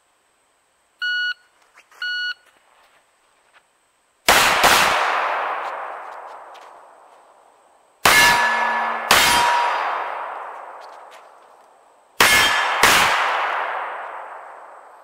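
A shot timer gives two short electronic beeps about a second apart. Then a pistol fires three pairs of shots, double taps a few seconds apart, and each pair rings out in a long, fading echo.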